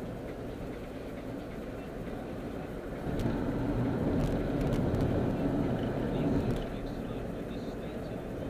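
Road noise heard inside a moving car's cabin: a steady low rumble of tyres and engine, louder for about three and a half seconds in the middle while the car crosses a bridge.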